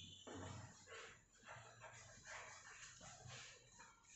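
Chalk scratching faintly on a blackboard as words are written, in short irregular strokes several times a second.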